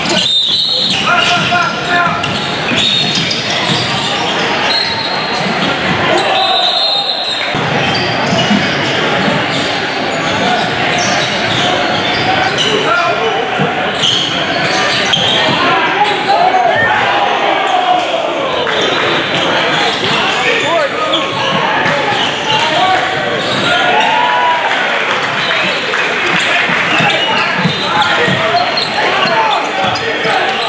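Live basketball gym sound in a large hall: a ball bouncing on a hardwood court amid players' and spectators' indistinct voices. The sound drops out briefly just after the start and again about seven seconds in, at cuts between plays.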